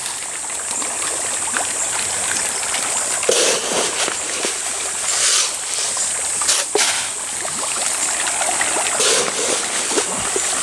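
Tilapia feeding at the pond surface, splashing and churning the water in a continuous wash of splashes, with sharper splashes every second or two.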